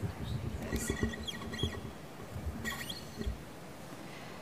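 Handling noise at a table microphone: a scatter of soft knocks and bumps, with a few short squeaks, as things are moved about on the table. It dies away about three and a half seconds in, leaving quiet room tone.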